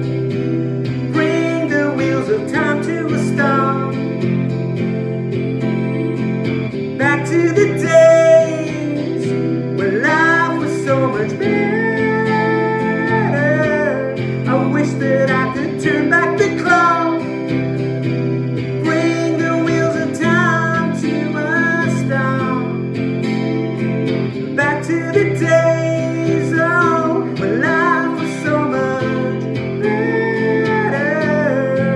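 A man singing while strumming steady chords on an Epiphone acoustic guitar.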